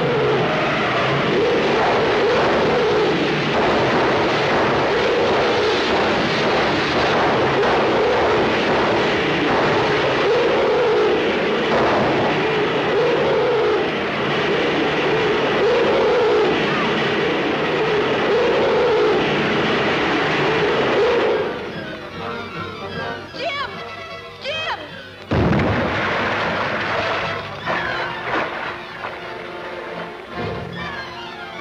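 A loud rushing roar of film sound effects with a tone that swells and dips every couple of seconds, cutting off suddenly about two-thirds of the way through. Orchestral score music follows, broken briefly by a sudden low hit.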